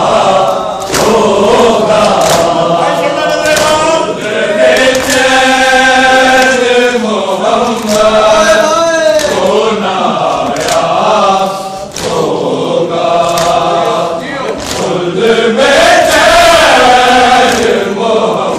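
A large crowd of men chanting a mourning lament (noha) together, with sharp chest-beating slaps (matam) coming roughly once a second.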